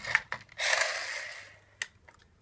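Handling noise as a plastic toy robot is picked up and moved: a click, a hiss that fades over about a second, and a sharp click near the end.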